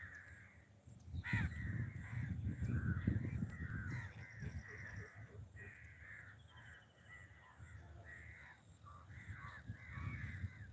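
Crows cawing over and over, many short calls overlapping. A low rumble comes in about a second in and is the loudest sound for the next few seconds, then fades.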